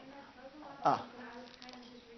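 A faint steady hum, with one brief sound falling sharply in pitch about a second in.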